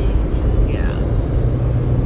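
Steady low road rumble inside a moving car's cabin, with a steady low hum joining about two-thirds of the way through.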